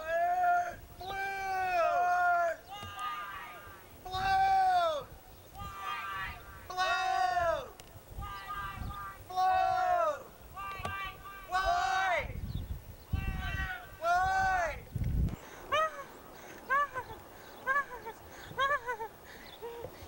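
A high-pitched voice sings or calls out a string of wordless notes, each rising and falling in pitch, about one a second. A few low rumbles come in past the middle.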